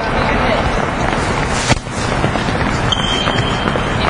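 Many players' feet stepping and shuffling quickly on a gym floor during a footwork drill, a dense steady clatter. A sharp knock sounds a little under two seconds in, and a short high squeak near the end.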